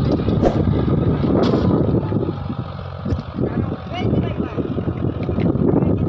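John Deere 5105 tractor's three-cylinder diesel engine working under load as it pulls a cultivator and harrow through the field, a steady low rumble.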